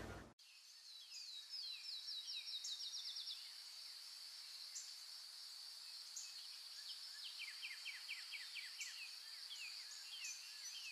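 Faint songbirds singing over a steady high-pitched insect drone. A rapid trill of quick, falling notes runs from about a second in for two seconds, and a lower series of quick notes follows near the end.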